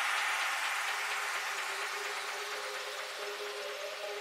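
Electronic transition effect in a trap music mix: a hiss-like noise wash slowly fading away, with a soft held synth tone coming in near the end.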